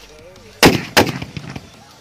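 Sutli bomb firecrackers going off: two loud bangs about a third of a second apart, followed by a few smaller pops.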